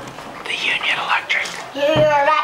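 Young children's voices, soft and whispery at first with no clear words, then a child starting to speak near the end.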